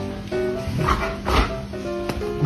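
A German Shepherd barking at a cat, two barks about half a second apart, over background music.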